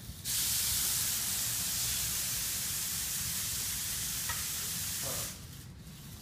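A swarm of about thirty small DASH six-legged robots scuttling across a hard concrete floor at once, their many tiny motors and legs merging into one dense, high hiss. It starts abruptly just after the start and cuts off all together about five seconds in.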